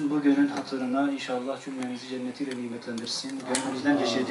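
A voice speaking continuously over a microphone, with no clear words picked out.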